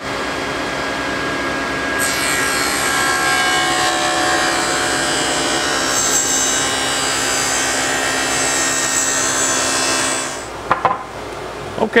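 SawStop table saw with a stacked dado set, starting up and plowing a shallow first pass of a wide groove down the middle of a walnut board. The motor comes on at once, the cutting begins about two seconds in, and it stops shortly before the end.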